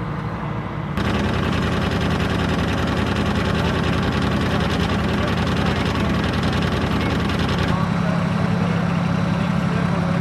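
LAV-25 light armored vehicle's diesel engine, a Detroit Diesel 6V53T two-stroke, idling steadily close by, with a low steady drone. It becomes louder and fuller about a second in.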